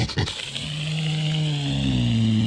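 A deer buck's long, low call that rises slowly in pitch, starting about half a second in after a couple of short clicks.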